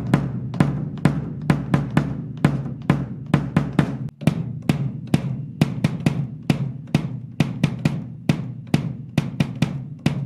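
Vintage Tama Imperialstar bass drum kicked repeatedly with the pedal beater, several strikes a second, heard through a camera microphone. It is first fitted with a Remo Powerstroke 3 batter head, and after a cut about four seconds in with an Evans GMAD head, which gives a tight thud with a sharp beater attack rather than a boom.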